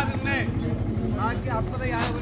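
Steady low drone of a motorboat engine running, under bursts of talking.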